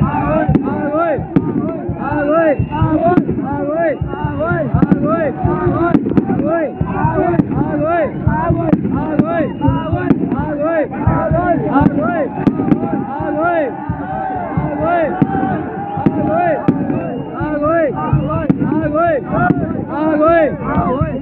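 A crowd of many voices shouting over one another, with firecrackers going off in sharp bangs again and again.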